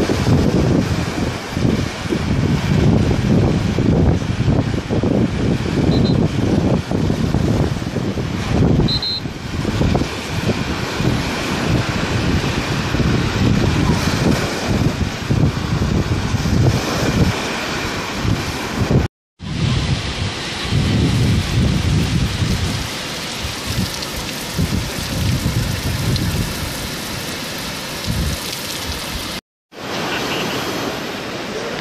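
Wind buffeting the microphone in loud, gusty rumbles over the steady rush of sea surf. The sound cuts out completely twice, briefly: once about two-thirds of the way through and once just before the end.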